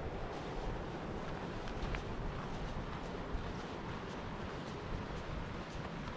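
Wind rumbling on the microphone over a steady rushing outdoor noise, with no clear events standing out.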